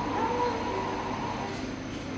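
Coffee shop ambience: a steady wash of background chatter and room noise, with a high, sliding voice-like call standing out near the start.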